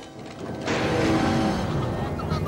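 Cartoon crash effect: a burst of wooden clattering starts just under a second in, as the wooden cart hits a stone on the cobbles and flips into the air, with a low tone sliding down as it fades. Background music plays underneath.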